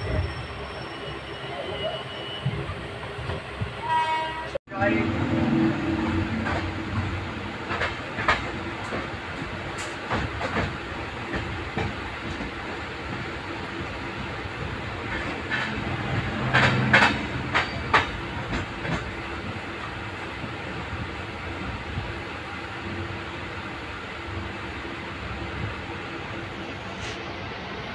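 Passenger train running, heard from inside the coach: a steady rumble of wheels on rails with repeated sharp clacks over rail joints and points, loudest and thickest about two-thirds of the way through. The sound cuts out for an instant about four and a half seconds in.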